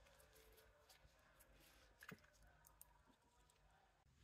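Near silence with a few faint clicks of small nail-stamping tools being handled on the table, one a little louder about halfway through.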